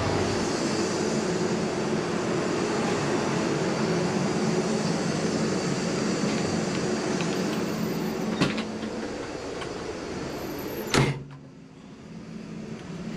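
Steady hum of the railcar's interior noise, then a click of a door latch about eight seconds in. About eleven seconds in comes a loud slam as the toilet door shuts, and the hum is much quieter after it.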